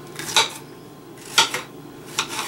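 Kitchen knife cutting vegetables on a cutting board: two strokes about a second apart, each a short slicing swish ending in a knock of the blade on the board.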